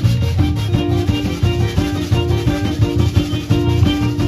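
Live zydeco band playing: a diatonic button accordion holds chords over electric bass, electric guitar and a drum kit keeping a steady dance beat.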